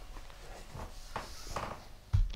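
Faint, scattered soft clicks and rustles over a low steady hum: an electric guitar plugged into an amp being handled just before it is played.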